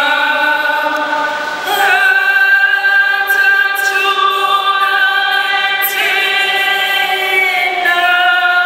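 A choir singing slowly, in long held notes that change every few seconds.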